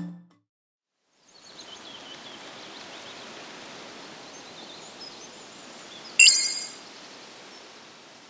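Quiet outdoor ambience with faint bird chirps, laid in as a background sound bed. About six seconds in, a sudden loud, short, bright sound effect cuts in briefly.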